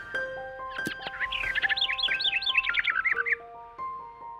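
Short intro jingle: held musical notes enter one after another, and a quick run of bird chirps, about six a second, plays over them from about a second in until just past three seconds.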